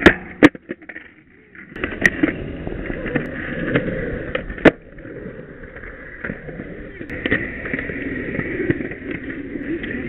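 Skateboard wheels rolling on concrete, with several sharp clacks of the board striking the ground or a ledge. The loudest come right at the start, half a second in and just before the halfway point.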